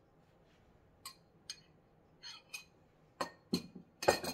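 Glass prep bowls knocking lightly against each other and the wooden cutting board as they are handled: a handful of soft clinks and taps spread over a few seconds.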